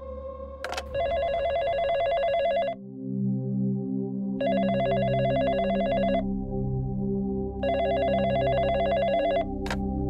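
Office desk telephone ringing three times, each ring a warbling trill lasting about two seconds with short gaps between, over low background music. A sharp click near the end.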